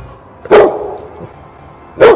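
A dog barks once, loudly, about half a second in.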